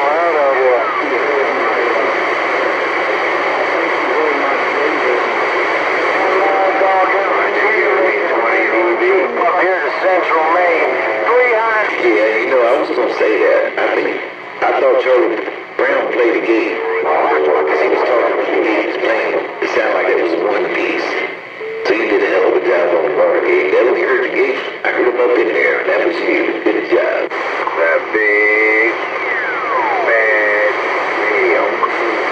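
Galaxy CB radio receiving voices from distant stations on channel 28 through a steady hiss of static, the voices narrow and hard to make out, with a few brief dropouts and a short falling whistle near the end.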